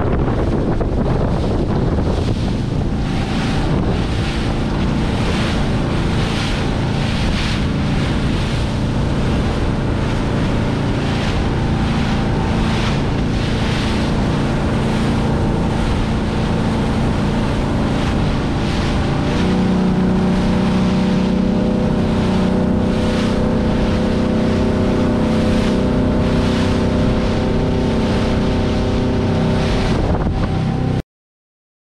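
Motorboat engine running under way, with water rushing and splashing along the hull and wind buffeting the microphone. About two-thirds of the way through, the engine note steps up and becomes louder and steadier.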